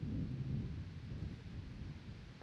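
Low, irregular rumbling of wind buffeting the microphone, stronger in the first second and easing off after.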